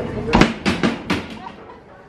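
Four or five sharp knocks or bangs in quick succession within about a second, the first the loudest.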